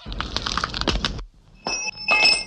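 Cartoon cracking and crunching sound effect as a decayed tooth breaks open: a rapid run of sharp crackles for about a second, then after a short pause a brief burst with a high, ringing squeak near the end.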